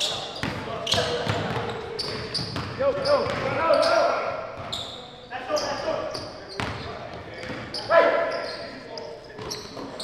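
Indoor pickup basketball: a ball bouncing and thudding on a hardwood court, with players' shouts ringing in the gym.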